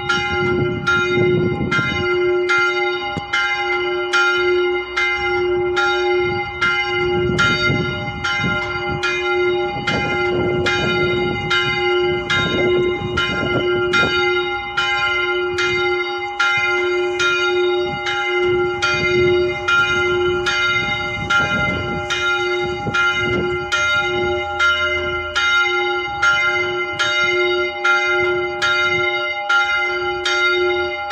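Small bronze church bell of about 200–300 kg swinging and ringing, its clapper striking about one and a half times a second. The strikes run together into a steady, humming peal of overlapping tones.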